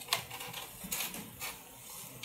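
A few short clicks and soft rustles, the sharpest just after the start, from a wax-rim denture record base being handled and seated in the mouth.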